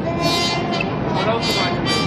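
Fountain-show music over outdoor loudspeakers, with brassy held notes, and people's voices mixed in.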